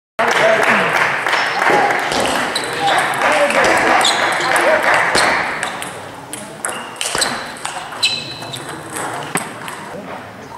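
Table tennis balls clicking off bats and tables, many quick sharp strikes, over a haze of people talking that is loudest in the first half and thins out after about five seconds.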